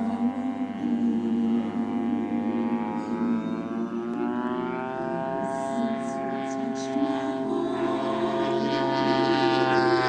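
Radio-controlled aerobatic model airplane engine running, its pitch slowly rising and falling as the plane manoeuvres, over freestyle music with a steady drone.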